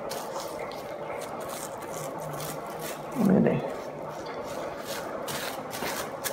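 Thin plastic grocery bag crinkling and rustling as hands press and smooth it over a disc of dough on a countertop, with a brief hum from a voice about three seconds in.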